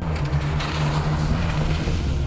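Chevy S-10 Blazer's engine running at steady high revs as the truck is driven through slush, over a broad rush of noise. The engine note eases slightly near the end.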